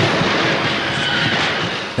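Loud, dense crackling and sizzling of an electrified fence shorting out in showers of sparks, a film sound effect.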